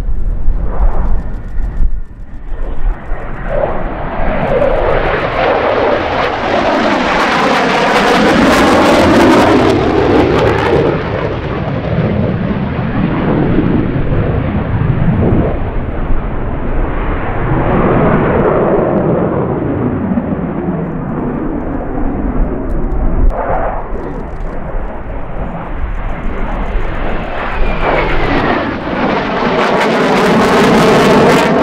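Twin RD-33 turbofan engines of a MiG-29 fighter jet in a display flight: loud continuous jet noise that swells and fades as the aircraft banks and turns, with sweeping rises and falls in tone. It is loudest about eight to ten seconds in and swells again near the end.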